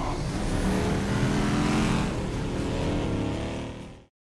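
Engine-like vehicle sound, steady, with a pitched hum that thins out toward the end and cuts off sharply.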